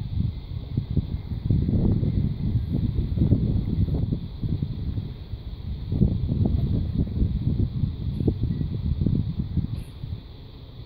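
Wind buffeting the microphone: a low, gusting rumble that swells and fades irregularly, over a faint steady hiss.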